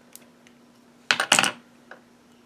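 Small hard makeup items knocking and clattering as they are handled and set down: a faint click near the start, then a louder clatter of a few quick knocks about a second in.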